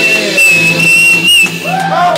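A live band's final held chord ringing out under one long, steady, high-pitched whistle. Near the end, the first whoops from the crowd come in.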